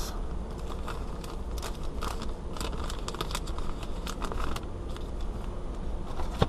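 Wrapper of a Topps Heritage baseball-card pack crinkling and tearing as it is opened by hand: a rapid, irregular run of small crackles and clicks over a low steady hum.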